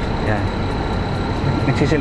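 A vehicle engine idling with a steady low rumble under faint voices, with a thin constant high-pitched tone running through it.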